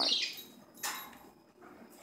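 Plastic RC toy truck being handled: a short hiss at the start and a brief click a little under a second in, with faint rustles near the end.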